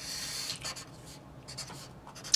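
Felt-tip marker drawing lines on paper, as several short scratchy strokes.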